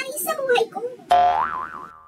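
A cartoon 'boing' sound effect: a sudden springy tone about a second in that wobbles up and down in pitch and dies away within about a second.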